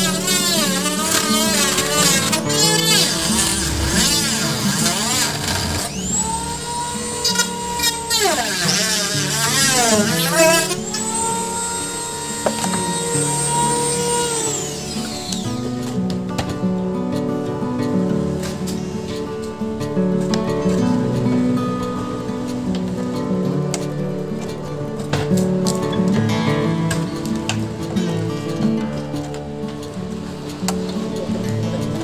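Background music with a steady beat throughout. Over it, for roughly the first fifteen seconds, a cordless drill's motor whines as it unscrews the lid frame of a chest freezer: it speeds up and slows in quick swoops, runs steadily for a few seconds, then winds down about halfway through.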